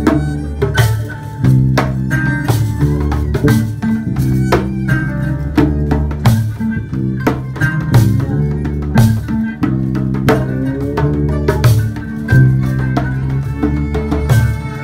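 A small world-music band playing live: djembe beaten by hand in a busy rhythm, kora plucked, violin playing over it, and bass holding sustained low notes underneath.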